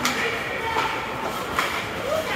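Ice hockey game sounds in a rink: indistinct spectator chatter with about three sharp clacks of sticks and puck on the ice.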